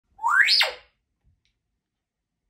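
African grey parrot giving a single whistle that glides up in pitch and straight back down, about half a second long.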